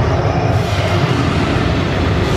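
The ice show's dramatic soundtrack playing loud over the arena loudspeakers, a continuous deep rumble with held tones, and a hiss that rises about half a second in.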